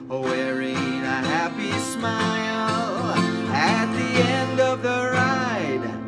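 A man singing a children's song to his own strummed acoustic guitar, the voice sliding between held notes over steady chords.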